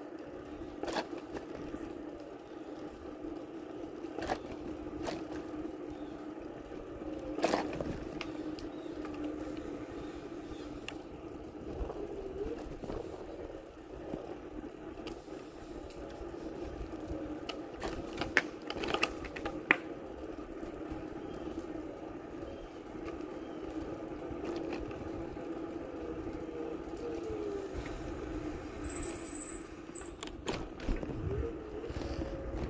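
A bicycle rolling along a concrete path with a steady rolling hum. A few sharp knocks and rattles come as it goes over bumps and joints in the pavement. Near the end there is a short, loud, high squeal as it brakes to a stop.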